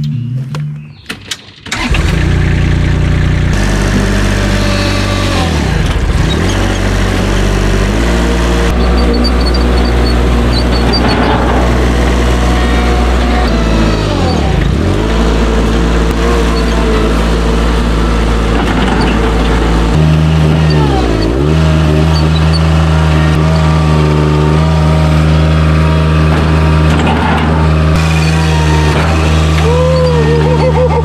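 Engine of a compact loader running steadily under the operator, heard from the seat while driving; it comes in suddenly about two seconds in and its note shifts partway through.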